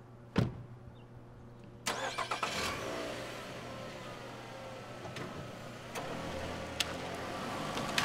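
A car door shuts with a single thump. About two seconds in, the Nissan Altima's engine cranks, catches and settles into a steady idle.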